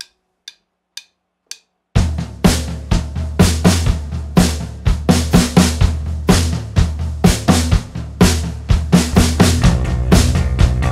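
Drumsticks clicked together four times, half a second apart, as a count-in, then a rock drum kit comes in about two seconds in with a steady beat of kick, snare and cymbals. Low sustained notes sound under the drums.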